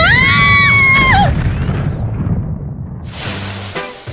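A woman screams for about a second, rising, held, then dropping away, over the low rumble of an explosion boom that fades over the next few seconds. A hissing rush of noise comes in near the end.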